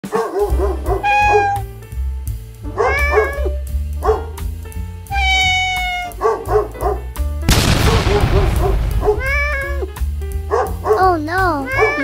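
Background music with a steady repeating bass line, overlaid with cartoon-style cat meows and dog yelps, several of them long gliding calls. About seven and a half seconds in comes a crash-like burst of noise lasting over a second.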